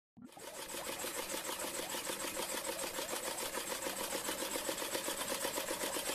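A fast, even mechanical-sounding clatter, about seven beats a second, fading in at the very start and running steadily.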